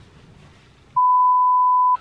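A single steady electronic beep at one high pitch, about a second long, coming in about a second in and cutting off abruptly. Faint room tone comes before it.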